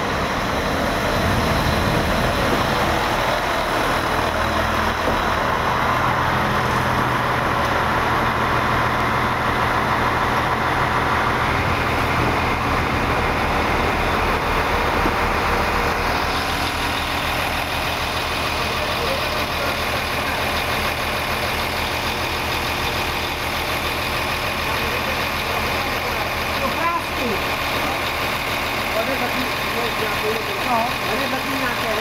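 Electric multiple unit running in close by and slowing to a stop, then standing with a steady hum from its onboard equipment.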